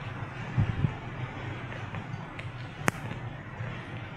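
Steady room tone of a large hall with a couple of soft low thumps about a second in and one sharp click near three seconds.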